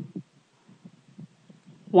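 A pause in a narrator's speech. A word ends at the start and the next begins at the very end, with only faint low ticks and rumbles in between.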